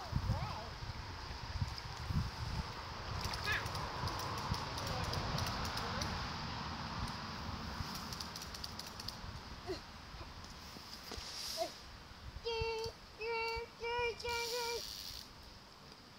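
Wind rumbling on the phone microphone over the wash of a river, with scattered light clicks. Near the end a child's voice makes four short sounds, each held on one steady pitch.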